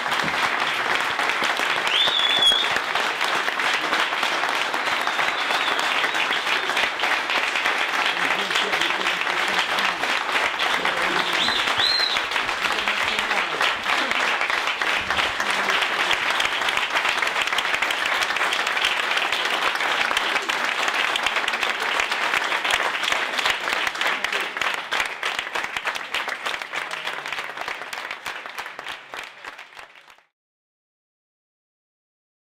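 An audience applauding steadily, with two short high whistling sounds early on and partway through; the clapping fades out near the end.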